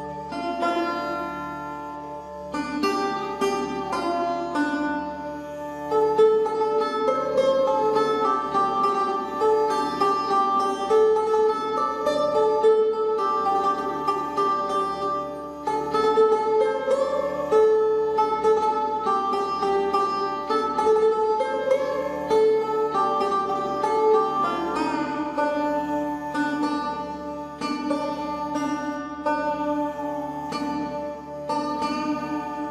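Background music led by a plucked string instrument playing a melody of distinct notes throughout.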